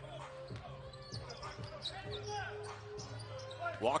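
Basketball being dribbled on a hardwood court, about two bounces a second, over a steady arena hum.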